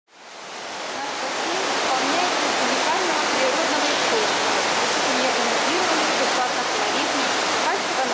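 Water from a pool waterfall spout pouring and splashing into an indoor swimming pool, a steady rushing splash that fades in over the first second or two.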